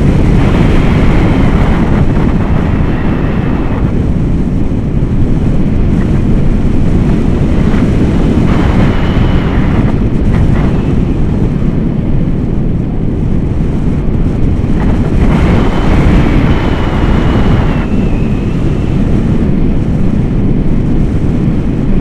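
Wind rushing over an action camera's microphone during a tandem paraglider flight: a loud, continuous rumbling buffet that swells into a brighter hiss three times.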